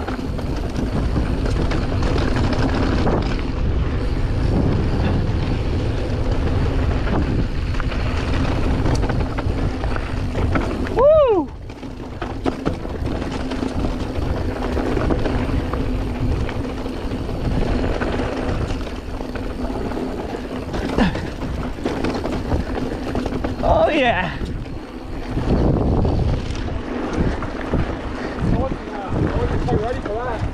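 Mountain bike rolling fast down a dirt trail: a continuous rumble of the tyres on the dirt and wind buffeting the microphone, with a steady low hum underneath. Brief rising-and-falling squeaks come about a third of the way in and again past the middle.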